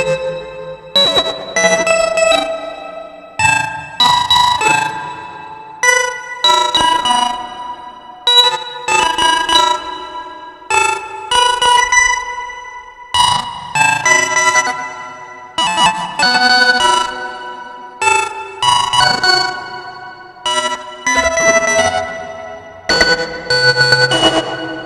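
Eurorack modular synthesizer playing a sequenced, shifting melodic pattern: sharp-attack notes about once a second, each a cluster of layered tones that fades before the next, with the pitches changing from note to note.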